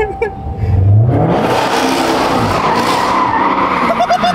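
Dodge Charger Hellcat's supercharged V8 revving up just before a second in, then held high while the rear tyres spin and squeal through a drift, a loud continuous skid.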